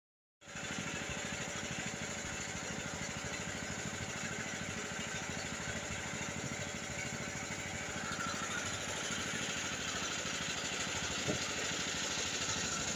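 A small wooden boat's engine running steadily under way, a fast even putter, over a steady hiss.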